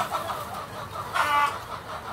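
A chicken gives one short call about a second in.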